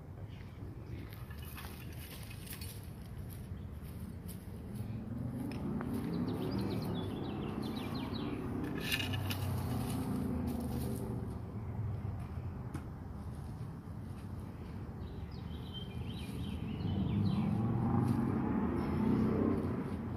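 A garden rake scraping through dry soil, ash and grit in scattered strokes, with short clicks and scrapes. Underneath, a low rumble swells twice, once in the middle and again near the end.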